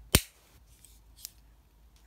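A single loud, sharp plastic snap as a GoPro Hero Session is clamped into its frame housing, followed about a second later by a faint tick.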